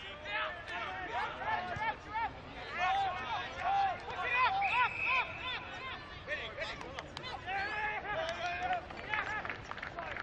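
Men's voices shouting and calling out during an Australian rules football match, short loud calls one after another, with no clear words. A short steady high tone sounds briefly about halfway through.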